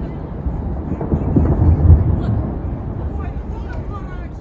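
Low, rough rumble of ice calving from the Hubbard Glacier's face into the sea, swelling to its loudest about two seconds in and then easing off.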